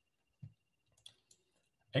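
A few faint computer mouse clicks, the clearest about a second in, over a faint steady high whine.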